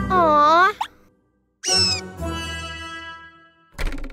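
Cartoon soundtrack: a character's short wavering vocal sound, a brief silence, then a ringing musical sound effect that fades away, with a short sharp pop just before the end.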